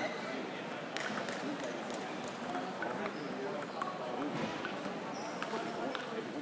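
Table tennis rally: the celluloid ball clicking sharply off paddles and table at irregular intervals of roughly a second, some hits in quick pairs, over the murmur of a crowded sports hall.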